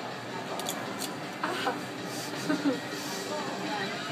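Indistinct voices over steady shop background noise, with a few small clicks about half a second to a second in.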